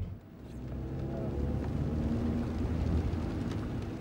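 Car cabin noise while driving: a steady low rumble of engine and road noise heard from inside the car.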